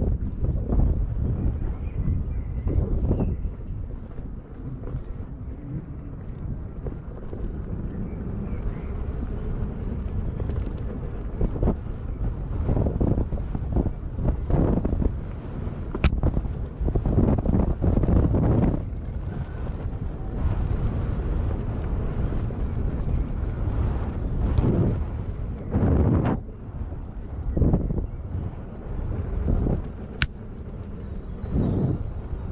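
Wind noise on the microphone from riding an electric unicycle along a dirt trail at about 15 km/h, a low rumble that rises and falls in gusts. A sharp click comes about halfway through.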